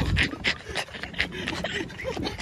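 A person panting hard with quick, even breaths, about three a second, out of breath from running.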